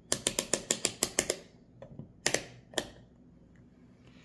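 Rotary selector dial of an AstroAI AM33D digital multimeter clicking through its detents as it is turned from off to the audible continuity setting. About ten quick clicks come in the first second and a half, then two more clicks a little past the middle.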